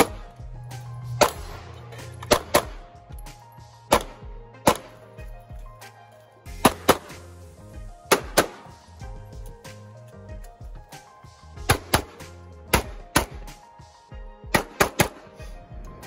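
Handgun shots fired at a practical-shooting stage, mostly in quick pairs with some single shots, about eighteen in all, over background music.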